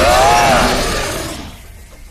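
Cartoon fight sound effects: a loud rushing whoosh of an energy attack, with a long pitched cry rising and falling over it during the first second, then fading away.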